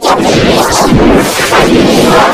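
Loud, heavily distorted and clipped audio: a dense, harsh blast of noise that rises and falls in a few surges, with no clear words.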